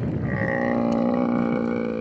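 A Cape buffalo bull giving one long, drawn-out bellow at a steady pitch: the death bellow of a mortally wounded buffalo after being shot.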